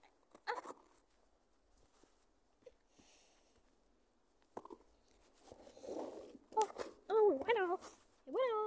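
Wordless vocal sounds with a wavering, up-and-down pitch in the last second and a half, after a short click about half a second in.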